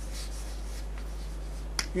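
Chalk writing on a chalkboard: faint strokes over a steady low hum, with one sharp tap of the chalk on the board near the end.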